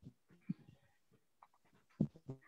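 Near silence on a video call's audio, broken by a few faint, brief sounds, the clearest about half a second in.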